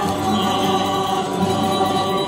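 A mixed choir singing a gozos devotional hymn in Spanish, accompanied by a rondalla of guitars and bandurrias.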